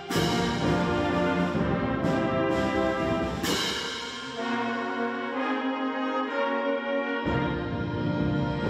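High school concert band playing sustained chords, brass to the fore, with new entries at the start and about three and a half seconds in. The low instruments drop out for about three seconds in the middle and come back in near the end.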